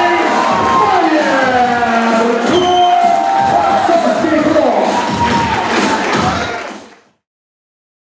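A song with singing plays loudly, with crowd cheering beneath it, and fades out about seven seconds in, leaving silence.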